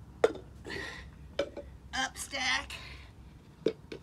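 Plastic stacking cups set down on a concrete driveway, three sharp clacks, between strained breaths and short grunts of effort from a man stacking in a push-up position.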